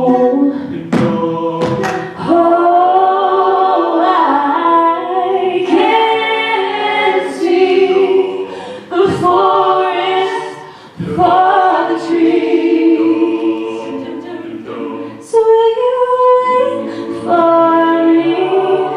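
A cappella group singing without instruments: several voices hold sustained chords in harmony around a lead singer, in phrases that swell and break off every few seconds.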